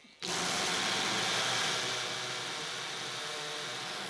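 Corded 800-watt hammer drill in hammer mode driving a masonry bit into a concrete block. It starts suddenly a moment in and then runs steadily and loudly.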